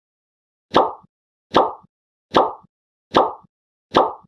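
A short pop sound effect played five times, each identical, evenly spaced a little under a second apart. Each pop marks a comment card popping onto the screen.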